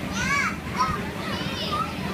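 Young children's high-pitched squeals and calls while playing, several short cries over about two seconds, with a steady low hum underneath.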